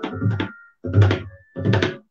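Tabla solo: three short phrases of sharp strokes on the dayan and bayan, with the bayan's deep bass boom under each. The phrases are separated by brief silent gaps, and the loudest phrase comes about a second in.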